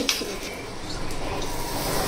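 Butter sizzling as it melts in a hot pan over a lit gas burner, a steady hiss.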